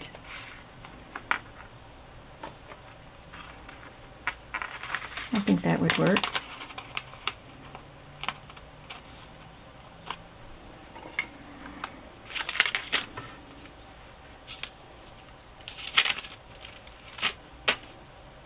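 Sheets of painted vellum being handled and shuffled on a cutting mat: intermittent papery rustles and crinkles with light taps and clicks. A short murmured vocal sound about five seconds in.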